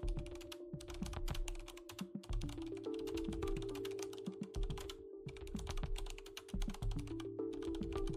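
Rapid typing on a computer keyboard, a quick run of key clicks with a couple of brief pauses, over soft background music of held notes.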